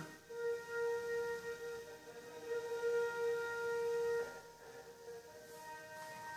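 Film's opening studio-logo music playing faintly from a TV: one soft, held note with overtones. It fades out about four seconds in.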